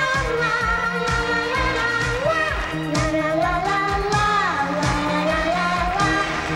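A young girl singing a pop song into a microphone over a band accompaniment with a steady drum beat.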